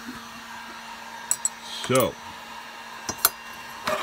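Light metallic clicks and clinks from an aluminium small-engine cylinder head, spark plug fitted, being handled and turned on a workbench: two quick pairs of clicks, about a second in and again about three seconds in, over a steady low hum.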